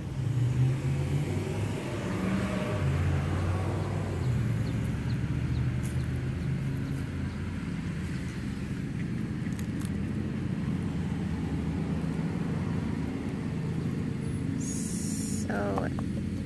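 A steady low mechanical hum, like a motor running nearby, with a few faint clicks. Near the end there is a brief high hiss.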